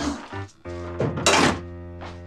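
A front door being shut, a single short thunk about a second in, over background music.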